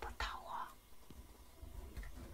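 A person whispering briefly near the start, close to the microphone, followed by a quiet stretch with a faint low rumble.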